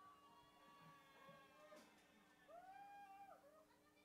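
Near silence with a faint steady hum and two faint drawn-out pitched calls, the second rising and falling about two and a half seconds in.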